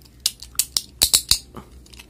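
Vanish Fafnir Beyblade Burst top being twisted shut by hand, its plastic layer and driver locking together with a quick run of sharp clicks.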